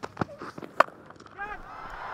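Cricket bat striking the ball for a big hit: a single sharp crack a little under a second in, followed by a brief voice exclamation.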